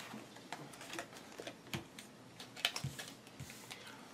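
Faint, irregular light clicks and taps of game cards being handled: shuffled through in the hand and set down on the felt table.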